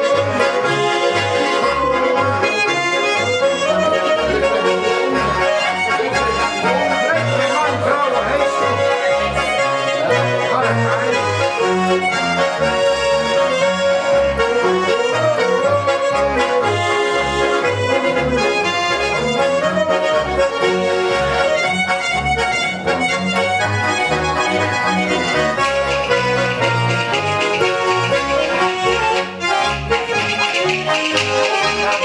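Two Schwyzerörgeli, Swiss diatonic button accordions, playing a Schottisch together, with a plucked double bass sounding low notes on the beat, about two a second.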